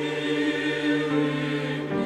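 Mixed church choir of men and women singing a hymn, holding a sustained chord that moves to a new chord near the end.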